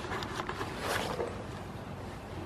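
Rustling and rubbing on the camera microphone as a goat's fur brushes against it, over a low wind rumble. The rustling swells about a second in.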